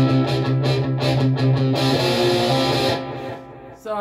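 Solid-body electric guitar strummed through a Boss Katana Mk II amplifier, chords ringing out with a steady strum. The playing stops about three seconds in and the last chord dies away.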